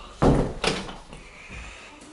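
Interior door thudding twice, about half a second apart, the second fainter.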